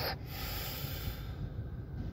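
A short breath or sniff close to the microphone at the start, over an irregular low rumble of a phone being handled and moved.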